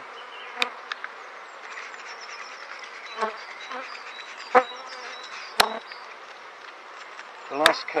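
Honeybees buzzing around an opened top bar hive, a steady hum close to the microphone, with a few sharp clicks and knocks scattered through it.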